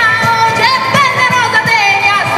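Live southern Italian folk dance music, a pizzica: a voice singing a held, wavering melody over strummed guitars and a diatonic button accordion, with a steady driving pulse.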